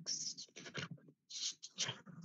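Irregular bursts of rustling, scratching noise picked up by a participant's open microphone on a video call.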